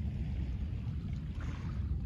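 Steady low rumble of wind buffeting the microphone, with faint small waves lapping on a pebble shore.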